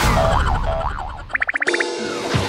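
Cartoon-style comic sound effects: a sweeping pitch glide, then a tone wobbling rapidly up and down, ending in a fast rattling trill of about twenty short beeps a second.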